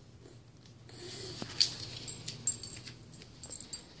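Quiet scuffling of a French bulldog at play: paw and claw clicks and scrapes on the floor, with a few sharp clicks and a short low grunt about a second in.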